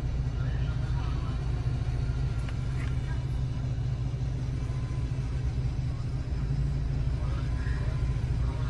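Steady low rumble of road vehicles, with faint voices talking underneath.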